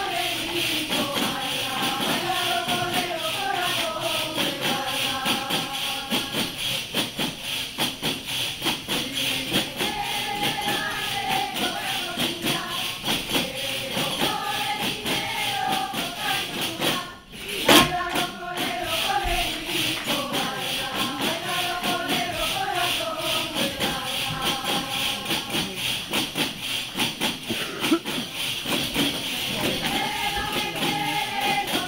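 Leonese folk song (a corrido de León) sung in unison by a group, accompanied by panderetas (jingled frame drums) beating a fast steady rhythm. About halfway through the music breaks off briefly and restarts with a loud drum stroke.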